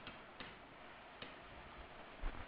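A few faint, light clicks of a stylus tapping on a pen tablet while handwriting is written, over a low steady hiss.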